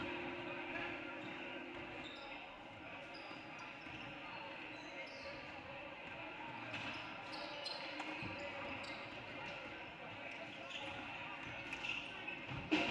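Several basketballs bouncing on a hardwood gym floor, with short high squeaks and a murmur of voices echoing in the large hall.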